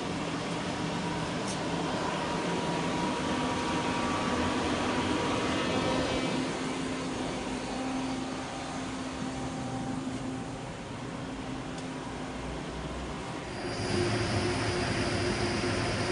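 Steady mechanical drone of the shop air compressor that supplies the CNC turn-mill centre. About three-quarters of the way through, the sound switches to a different steady hum with a thin high whine as the powered-up lathe is heard.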